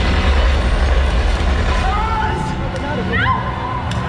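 Motorboat engines running and water cannons spraying in a stunt-show lagoon, a steady loud rush with a deep rumble underneath. A performer's voice calls out over the noise near the middle.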